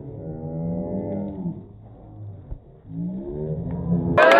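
A cow mooing twice: one long call at the start, then a second call rising in pitch from about three seconds in.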